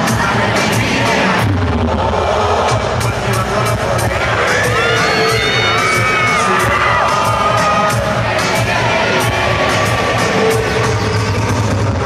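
Loud live concert music over an arena sound system, with a steady heavy bass and sharp drum hits, under a large crowd cheering and shouting. A melody line sliding up and down in pitch stands out from about four to eight seconds in.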